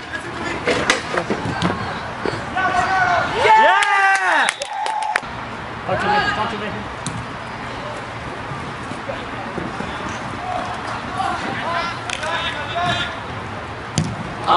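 Distant shouts and calls of players in an outdoor soccer game, the loudest a long call about four seconds in, with a few sharp knocks and steady outdoor background noise.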